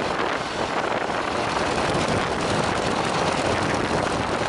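Stampe SV4B biplane in flight: its de Havilland Gipsy Major four-cylinder inline engine and propeller running steadily, heard from the open cockpit under heavy wind rush on the microphone.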